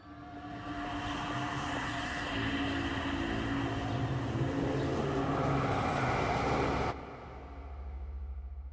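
A steady, engine-like drone with a few held tones swells in over the first second and cuts off abruptly about seven seconds in, leaving a faint low hum.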